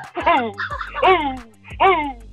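A man laughing in a string of loud, high cackling bursts, each falling in pitch, about five in two seconds.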